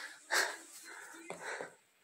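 A man laughing under his breath: a few short, wheezy exhaled bursts, the first the loudest.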